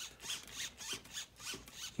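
RC truck's steering servo whirring in short back-and-forth bursts, about three a second, each rising and falling in pitch, as the receiver's gyro steers against the truck's movement.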